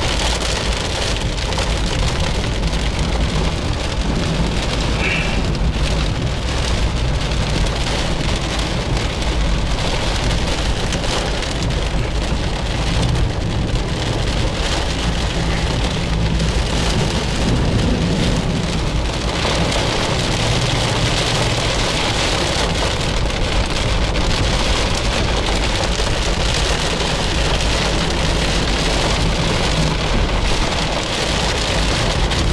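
Heavy rain falling steadily on a car's roof and windshield, heard from inside the cabin, over a constant low rumble of the car moving on the wet road.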